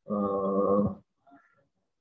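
A man's drawn-out hesitation sound, a single steady held 'eeh' at speaking pitch lasting about a second, followed by a few faint small noises.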